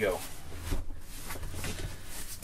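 A large cardboard guitar shipping box handled and pulled at by hand, with irregular cardboard scraping and rustling and a few light knocks.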